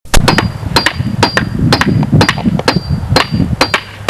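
Hammer blows in a steady rhythm, two or three quick strikes about every half second, each with a brief metallic ring.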